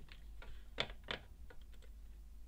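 A few faint, irregular clicks of a computer keyboard, the two loudest near the middle, over a low steady hum.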